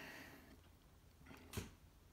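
Near silence, with one faint metallic click about one and a half seconds in: steel tweezers against a brass lock cylinder's pin chamber.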